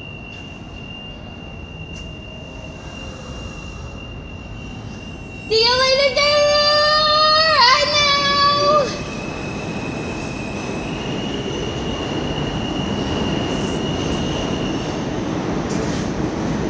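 Subway train approaching the station. About five seconds in there is a loud high-pitched blast lasting about three seconds, with a brief dip in pitch near its end. After it the train's rumble grows steadily louder, with a thin high whine above it.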